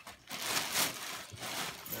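Gift wrapping paper rustling and crinkling in short bursts as it is handled, loudest just under a second in.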